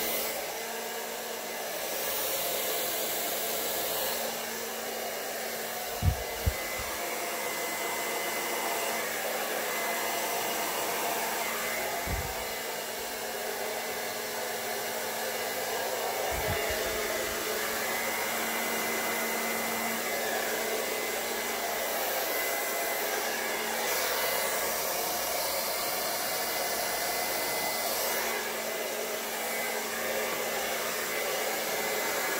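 Hand-held hair dryer on a cool, low setting, blowing steadily with a faint whine, its hiss changing a little as it is moved about. A few dull low thumps come through, two close together about six seconds in.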